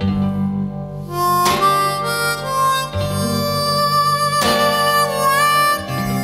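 Instrumental blues: a harmonica playing long held notes, one bending near the end, over strummed acoustic guitar with a low bass line.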